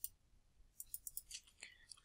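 Near silence with faint computer-mouse clicks: one sharp click at the start, then a scatter of small clicks in the second half.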